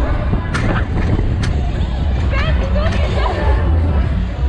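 Loud fairground din inside a spinning slingshot ride: music and voices over a heavy steady low rumble. Two sharp clicks come about half a second and a second and a half in, and a short rising cry about two and a half seconds in.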